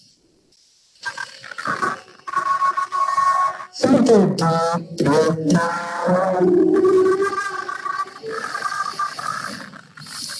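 A recorded yoga nidra track played back through a media player: a voice chanting in long, sliding notes over background music, starting about a second in.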